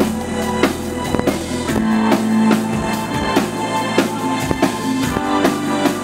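Synth-pop band playing live at concert volume: a steady drum-kit beat of bass drum and snare under sustained keyboard chords. A deep bass note drops out about two seconds in.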